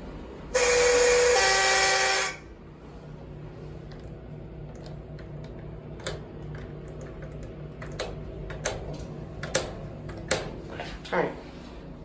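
Schindler elevator's buzzer sounding loudly for about two seconds, its pitch dropping a step partway through. It is followed by a few sharp clicks and knocks.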